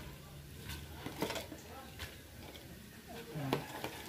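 A few light clicks and knocks as vegetables are stirred in a stainless steel pot, over a low steady hum.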